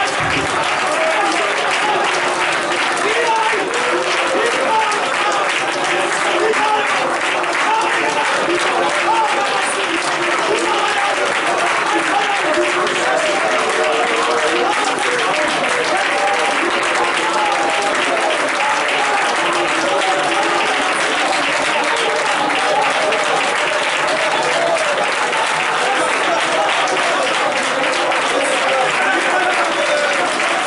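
A small congregation clapping steadily while many voices pray and call out aloud at the same time, a continuous overlapping din with no single voice leading.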